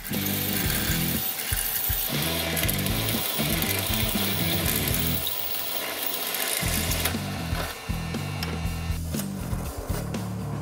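Drill press boring through aluminum sheet with a carbide hole cutter, a steady cutting noise that eases off about seven seconds in, over background music with a bass line.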